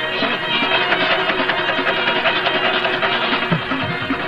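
Instrumental Pashto folk music: fast plucked-string playing over steady held tones.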